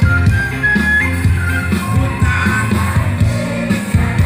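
Live band music played loud through an outdoor PA, with a steady beat, a heavy bass line and a high melody line on top.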